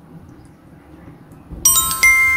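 A bright, bell-like chime strikes suddenly about one and a half seconds in and is struck again at the end, ringing on with several clear tones: a ding sound effect over the logo ending. Before it there is only a quiet background.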